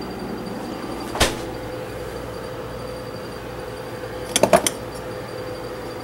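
Handling noise: one sharp knock about a second in, then a quick run of three or four clicks a little past four seconds in, over a steady faint hum.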